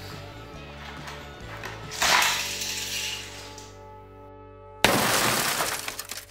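Two crashing, shattering bursts of noise over background music as a launched Hot Wheels car knocks into plastic toy soldiers. The first comes about two seconds in and fades over a second or so; the second starts suddenly near the end, louder, and cuts off abruptly.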